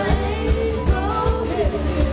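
Live rock band playing: a singer's voice over electric guitars, bass and a drum kit keeping a steady beat.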